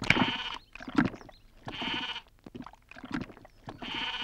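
An animal bleating: three short bleats spaced about two seconds apart.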